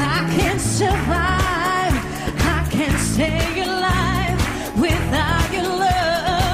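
A woman singing a pop song into a handheld microphone over an up-tempo backing track with heavy bass and a steady beat of about two strokes a second.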